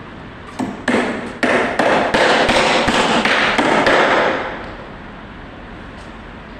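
Hammer blows on timber, most likely nails being driven into wooden formwork battens. About ten quick strikes come roughly three a second, starting about half a second in and stopping after about four seconds.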